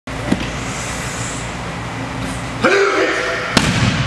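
A man's short shout about two and a half seconds in, then a sharp thud as a body falls backwards onto a padded mat.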